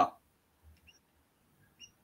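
A pause between speech: near silence, broken only by two faint, brief high-pitched chirps about a second apart.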